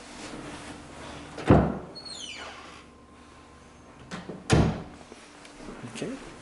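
Two heavy thumps about three seconds apart, with a brief falling creak just after the first.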